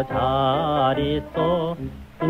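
A solo voice singing an old Korean popular song, holding notes with a wide vibrato in short phrases, over a steady instrumental accompaniment.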